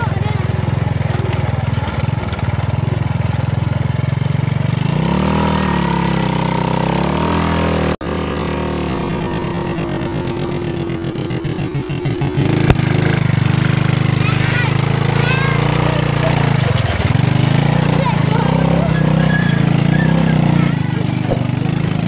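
Motorcycle engine pulling a becak sidecar carriage, running under load through deep mud and revving up and down about five to eight seconds in. The sound breaks off abruptly at about eight seconds. In the second half, voices call out over the engine.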